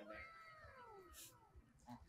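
A faint, drawn-out vocal sound gliding down in pitch for about a second and a half.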